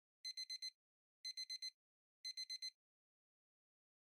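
Electronic beeping sound effect, like a digital alarm clock: three bursts of four quick high-pitched beeps, one burst each second, then silence.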